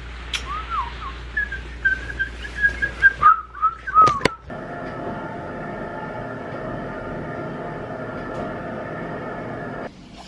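A person whistling a short wavering tune, with a couple of sharp clicks near its end. It is followed, from about four and a half seconds in, by a steady drone of several held tones.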